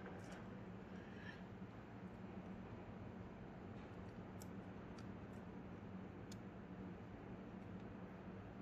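Steel tongs probing among bismuth crystals in a pot of molten bismuth, giving a few faint metallic ticks about midway, over a low steady hum.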